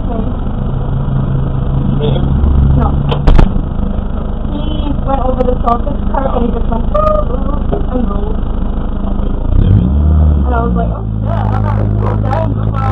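Race car engine idling with the car at a standstill, under muffled talking in and around the cabin, with one sharp knock about three seconds in. Near the end the engine note rises and settles higher as the car moves off.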